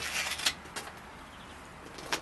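Rubbing and scuffing of a punctured bicycle tyre being handled by gloved hands on the wheel, with two small clicks about half a second in, then only faint steady background hiss.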